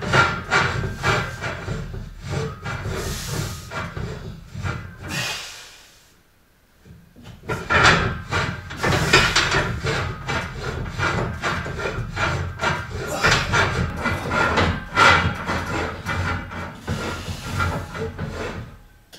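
A man breathing hard in rapid hissing breaths while straining through a static leg-raise hold on a gymnastics rack, with a brief pause about six seconds in before the breathing resumes.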